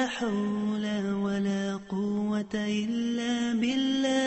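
Sung Islamic dhikr chant in Arabic: a single voice holding long, drawn-out notes with melismatic turns, with two short breaks for breath near the middle.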